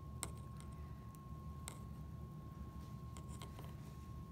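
Faint handling clicks and ticks as a paper-wrapped twist tie is threaded through a plastic button, a few light clicks spread over a few seconds. Under them runs a low steady hum and a thin steady tone.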